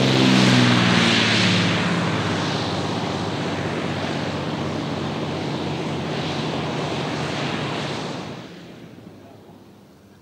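De Havilland Canada DHC-4 Caribou's twin radial piston engines and propellers during a short-landing rollout on a dirt strip. It is loudest in the first second or two, with a steady low engine drone under the propeller roar. The roar then holds steady and dies away about eight seconds in.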